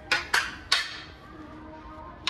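Hockey sticks knocking against each other on a store rack as they are handled: three sharp clacks within the first second.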